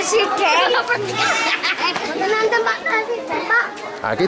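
A group of children talking and calling out over one another, their high voices overlapping without a break.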